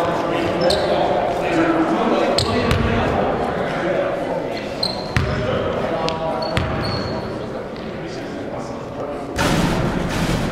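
Echoing gym ambience of a basketball game during free throws: chatter of many voices, a few sharp bounces of a basketball on the hardwood, and short high sneaker squeaks. A louder rush of noise sets in near the end.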